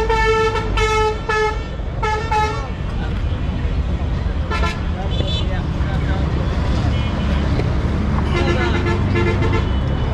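Vehicle horns honking in street traffic: about five short blasts in the first couple of seconds, then a lower-pitched horn tooting about four times near the end, over a steady low rumble of engines.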